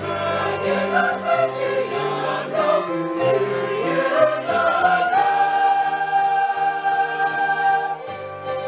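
Choir singing in harmony, the voices climbing to a long held chord about five seconds in.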